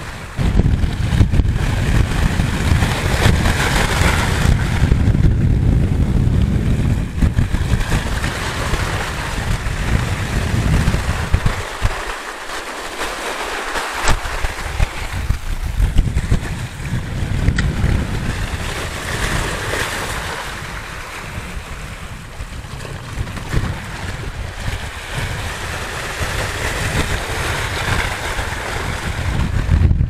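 Sea waves washing and breaking against shoreline rocks while wind buffets the microphone with a heavy low rumble. The rumble drops away briefly about twelve seconds in.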